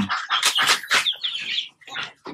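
Rhode Island Red hens feeding, with short chirps and clucks over a quick run of sharp pecking taps on the slatted floor that thins out near the end.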